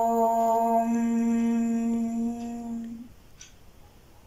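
A woman's voice chanting a long, steady 'Om' on one held note, closing into a hum a little under a second in and fading out about three seconds in.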